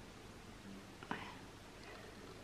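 Quiet room with a faint breath about a second in, a soft click followed by a short hiss.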